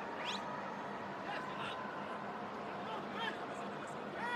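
Steady stadium crowd noise under a televised football match, with a brief rising whistle near the start.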